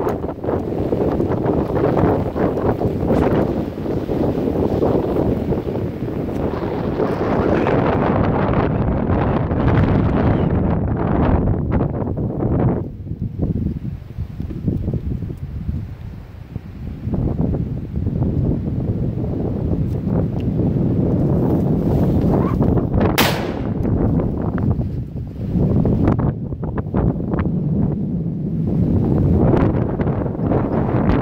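Wind buffeting the microphone in irregular surges, with a quieter lull about halfway through. A single short sharp click sounds about three-quarters of the way in.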